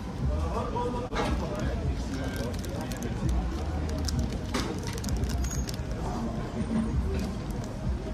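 Indistinct background chatter of voices over a steady low urban rumble, with a few short crunches as a döner in a toasted flatbread is bitten into and chewed.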